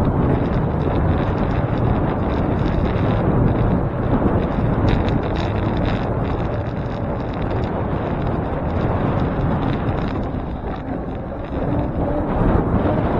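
Wind rushing over the microphone of a camera on a moving bicycle, a steady rumbling noise, with city road traffic mixed in.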